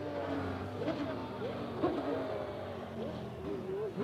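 A Ferrari Formula One car's V12 engine running at low revs, its pitch falling, while a crowd shouts and cheers.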